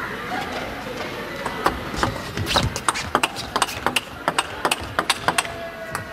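Table tennis rally: the plastic ball ticking sharply off the rubber-faced bats and the table in quick alternation. It starts about a second and a half in and runs for about four seconds.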